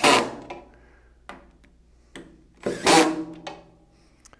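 Cordless drill driving screws in two short runs, one at the very start and one about three seconds in, with a few light clicks between.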